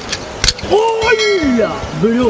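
A handboard, a hand-sized skateboard, clacking sharply on a stone ledge as it is flipped and caught, followed by a long drawn-out vocal exclamation that rises and then falls in pitch.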